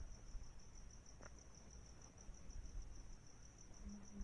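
Faint high-pitched insect trilling, a steady, evenly pulsing note, over low background rumble, with one faint click a little over a second in.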